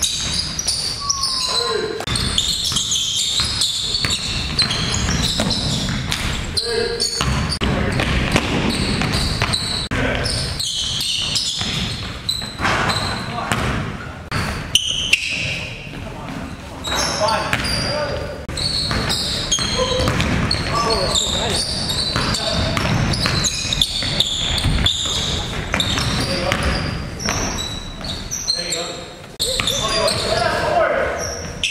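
Live basketball game sounds echoing in a gym: the ball bouncing on the hardwood floor, repeated short knocks, sneakers squeaking, and players' indistinct voices.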